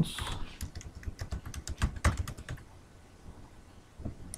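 Computer keyboard typing: a quick run of keystrokes that stops a little past halfway.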